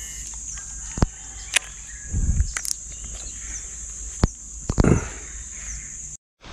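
Steady high-pitched drone of insects, with a few sharp clicks and two dull thumps about two and five seconds in.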